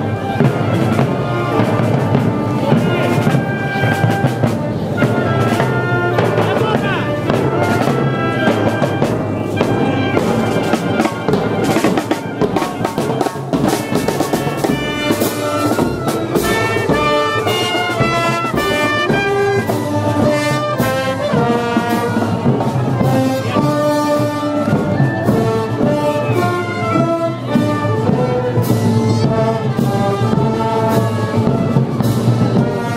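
Marching band playing: trumpets, trombones and clarinets carrying the tune over snare and bass drum beats.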